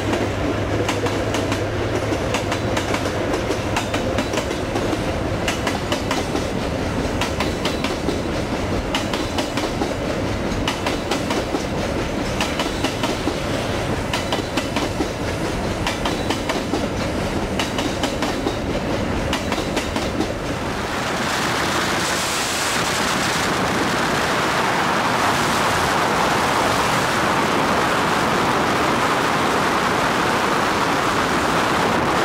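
Freight train passing at close range, its wagon wheels clattering and clicking over the rail joints, with a low locomotive engine drone at first. About 21 seconds in this gives way to a steady rushing noise of wind and road from a vehicle moving alongside the train.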